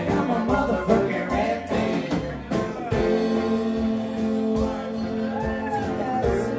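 A live folk-rock band playing, with a woman singing over acoustic guitar, upright bass, drums and keyboard.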